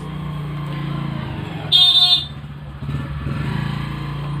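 A motor vehicle engine running steadily in the background, with one short horn toot about two seconds in.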